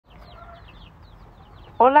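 Domestic chicks peeping faintly in the background, a string of short, high, falling chirps.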